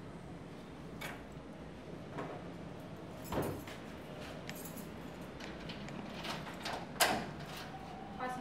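A barred metal security door being unlocked and opened: several separate clicks and metallic knocks, the loudest near the end.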